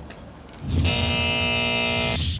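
A TV show's musical transition sting: a held synthesized chord over a low rumble, coming in after a brief lull, with a burst of hiss near the end.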